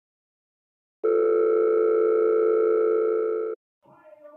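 Telephone call tone: one long, steady electronic tone lasting about two and a half seconds, starting about a second in and tapering off slightly before it stops.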